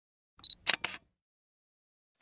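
Short intro sound effect for an animated logo: a brief high beep about half a second in, followed quickly by two sharp clicks, all over within the first second.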